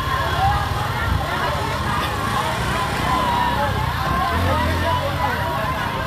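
Crowd of many people talking and calling out at once, with no single voice standing out, over a low rumble and a steady thin tone.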